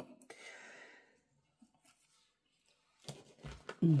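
Faint close handling sounds: a short breathy exhale about a third of a second in, then near the end a few light clicks and one dull tap as metal tweezers and a sheet of foam-tape dots are handled on a cutting mat.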